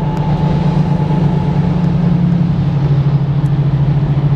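Steady low drone of a BMW 135i's N55 turbocharged straight-six at highway cruise, heard inside the cabin over tyre and wind noise. The drone drops slightly in pitch about three seconds in.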